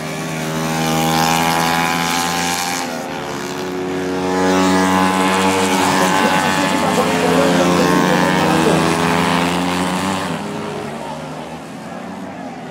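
Small 70 cc racing motorcycle engines at high revs passing close by through a corner. The engine note swells and fades, its pitch dropping as the bikes go by and rising again as they accelerate, loudest in the middle and fading near the end.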